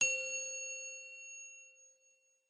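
A single bright, bell-like ding that rings with several clear tones and fades away over about two seconds.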